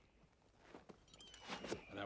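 Faint scuffing and rustling of leather boots being pulled off by hand, with a thin falling whistle about a second in.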